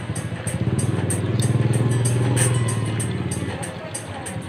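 A motorcycle engine passes close by, growing louder over the first two seconds and fading away after, over background music with a steady hi-hat beat.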